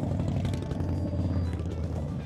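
A group of cruiser motorcycles riding past. Their engine sound builds, peaks about three-quarters of the way through and then fades as they go by.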